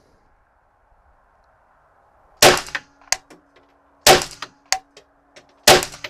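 Three shots from a .22 LR Kriss Vector mini rifle, fired about a second and a half apart, the first coming about two seconds in. Each shot is followed by a few light metallic clinks.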